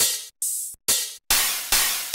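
Electronic hi-hat samples auditioned one after another: about five short bursts of cymbal hiss, each starting sharply and fading, one every half second or so.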